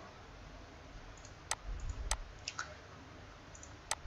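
A few sharp computer mouse clicks, spread over the last two and a half seconds, over a faint hiss.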